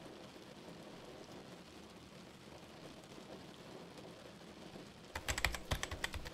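Fast computer-keyboard typing, a quick run of clicking keystrokes starting about five seconds in. Before it there is only a faint steady hiss.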